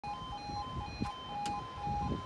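UK level crossing two-tone 'yodel' warning alarm, alternating between a lower and a higher tone about twice a second, sounding as the road barriers come down for an approaching train. Two brief clicks come about a second and a second and a half in.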